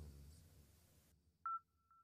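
Near silence, then a single short electronic beep about one and a half seconds in, followed by a faint thin tone at the same pitch.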